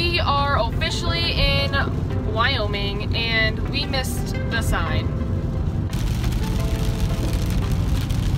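Car interior with a steady low road rumble under a voice and background music; about six seconds in, a steady hiss of tyres on a wet road joins.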